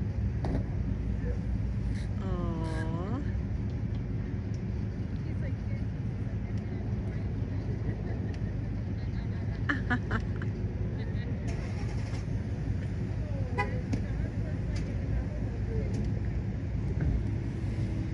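Outdoor ambience of distant people's voices over a steady low rumble. One drawn-out voice call comes about two seconds in.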